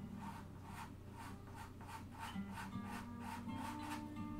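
Pastel pencil scratching on Pastelmat board in short repeated strokes, about three a second, over soft background guitar music.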